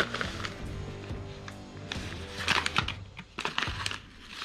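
Soft background music with steady held notes, over which a paper envelope rustles and crinkles as it is slid out of a clear plastic binder sleeve and handled. The crackling is densest in the second half.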